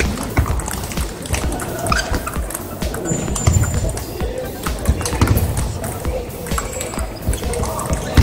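Table tennis balls clicking on paddles and tables, many irregular ticks from games all around a large hall, over music.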